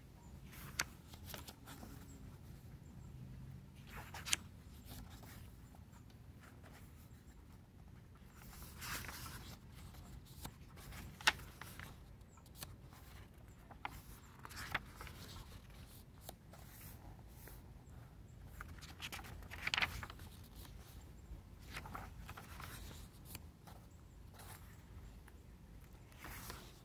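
Glossy pages of an album's photo book being turned by hand: quiet, occasional paper swishes and small taps of fingers on the pages.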